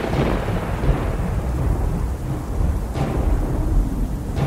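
Deep, rolling thunder rumble with a rain-like hiss. It swells at the start and is struck again briefly about three seconds in.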